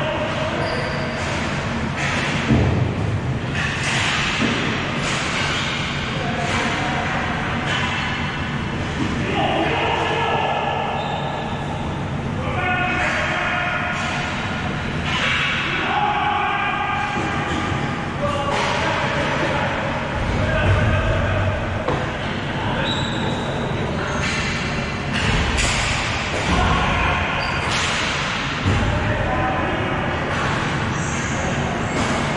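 Players' shouts and calls echo through a large hall during a ball hockey game, with scattered thuds and slaps of sticks and ball against the floor and boards. A steady low rumble of the hall runs underneath.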